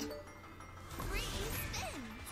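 Background music from an online slot game, softer in the first second and fuller in the second half as the free-spins bonus is awarded.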